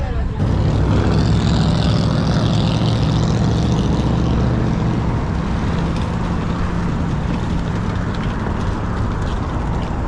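A city bus's engine running close by as it passes in the street, over steady traffic noise, with a hiss over the first few seconds.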